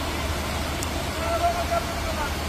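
Steady hiss of heavy rain and rushing floodwater, with a brief faint call, like a distant voice, a little past halfway.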